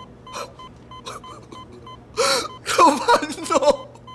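A young man gives a sharp gasp about two seconds in, then a wavering, drawn-out crying wail, over a hospital monitor's regular beeping.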